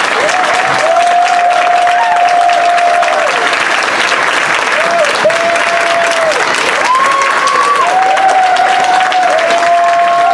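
A roomful of people giving a standing ovation, clapping steadily throughout. Several long, held tones rise over the clapping, each lasting a second or two.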